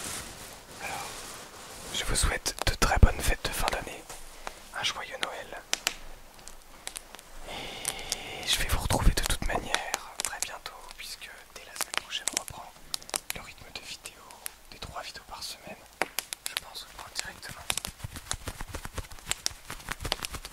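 Soft whispering close to the microphones, mixed with crackly rustling of cloth being handled right against the mic. There are two louder stretches of handling, about two and about eight seconds in.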